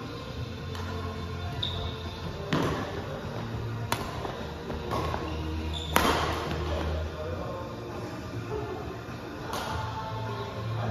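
Badminton racquets hitting a shuttlecock in a rally: sharp hits about two and a half, four and six seconds in, the last and loudest an overhead smash. Music plays throughout.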